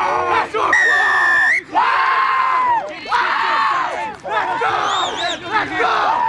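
Sideline spectators and players shouting and yelling over one another, with a single steady blast of a referee's whistle about a second in, lasting under a second.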